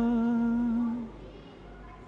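A solo singer holds one long, steady note of a devotional hymn, fading out about a second in, followed by a short pause between lines.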